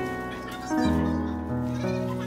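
Slow instrumental background music: held notes and chords that change about once a second.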